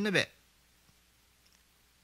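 A man's sermon voice finishes a word about a quarter second in, then a pause of near silence: quiet room tone with a faint click or two.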